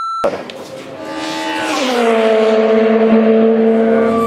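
A race car's engine growing louder as it approaches at speed, its note dropping in pitch as it passes about two seconds in, then holding steady.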